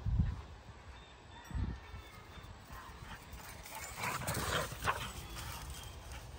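Two dogs play-fighting, with a burst of growling and yapping about four seconds in. Two low thumps come near the start.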